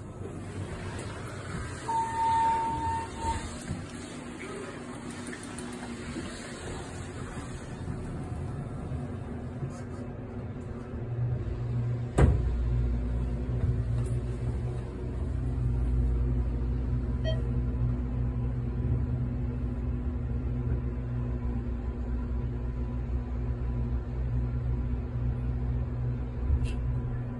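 A Thyssenkrupp elevator: a single steady chime tone of about a second about two seconds in, then near halfway a sharp thump as the car sets off, followed by the steady low rumbling hum of the car travelling.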